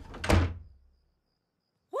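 A door slammed shut: one heavy thud about a third of a second in, with a low boom that dies away within a second.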